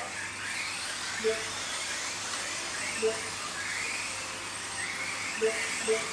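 Several Kyosho Mini-Z scale radio-controlled cars racing, their small electric motors whining and rising and falling in pitch with throttle. A few short beeps sound over the motors.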